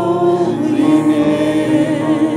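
A small group of mixed voices singing a worship song into microphones, holding a long note and then moving on to the next.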